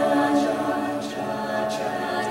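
Mixed a cappella group of men and women singing a quiet, sustained wordless chord, with a few faint short hissing sounds above it.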